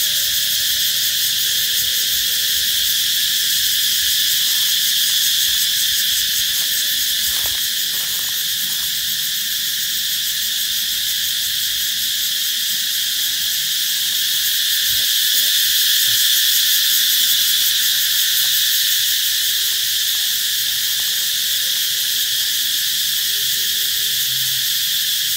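Cicadas singing in a loud, steady chorus: a continuous high drone that swells a little past the middle.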